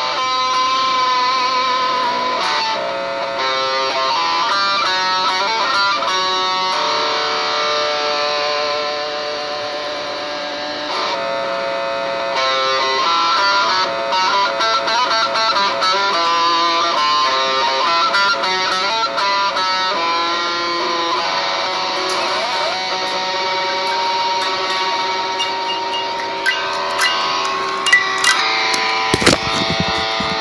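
Eastwood Sidejack electric guitar played through a Vox AC15 valve amp: a run of single-note melodic lines and held notes. Several sharp clicks near the end.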